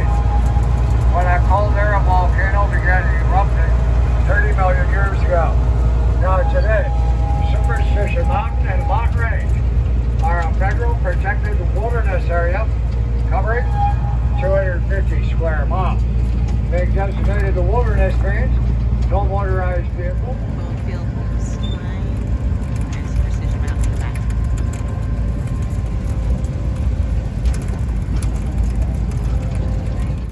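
Steady low rumble of a small open-air tourist train running along its track. Over it, for the first two-thirds, a guide's voice comes through a horn loudspeaker.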